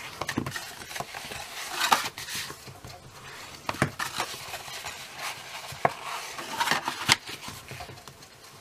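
Scored cardstock being folded and burnished with a bone folder: repeated papery swishes and scraping rubs, with a few sharp taps.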